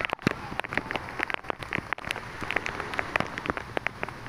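Light rain pattering near the microphone: a dense, irregular run of small ticks over a steady hiss.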